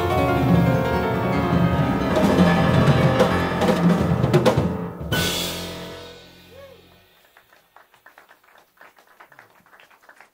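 Jazz piano trio of acoustic grand piano, double bass and drum kit playing the last bars of a tune. It ends on a held chord with a loud cymbal crash about five seconds in. The crash rings and dies away over the next two seconds, leaving only faint small noises.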